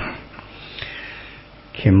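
A man's breath sniffed in through the nose close to a lectern microphone, faint and brief, in a pause between spoken phrases; his speech starts again near the end.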